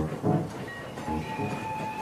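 A train rolling along rails, its wheels clacking over the rail joints in pairs about once a second. About a second in, a steady whistle starts sounding over it.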